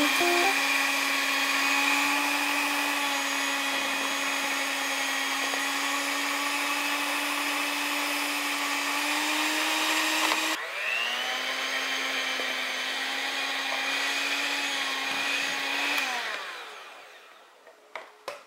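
Electric hand mixer running steadily as its beaters work mashed sweet potato and flour in a plastic bowl, with a steady motor whine. About ten seconds in it cuts off abruptly and spins up again, then winds down near the end.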